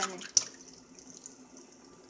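A raw egg going into a hot nonstick frying pan greased with spray butter: one sharp knock about a third of a second in, then faint steady sizzling as the egg begins to fry.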